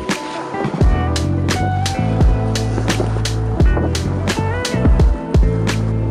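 Background music with a steady drum beat over a held bass line.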